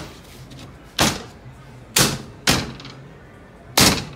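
Four sharp knocks on a marine-plywood sign panel seated in its steel angle-iron frame, each with a short decaying ring: the panel being knocked and pressed down into the frame to show how snugly it fits. The knocks come about a second in, two seconds in, half a second later, and near the end.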